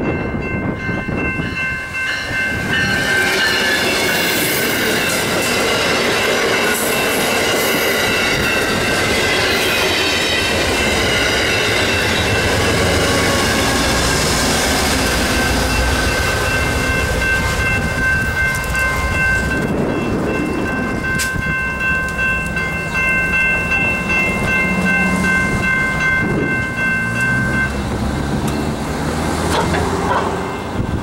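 Amtrak GE Genesis diesel locomotive hauling a passenger train past, its multi-note air horn sounding long and steady over the engine and wheel-on-rail noise. The horn stops near the end.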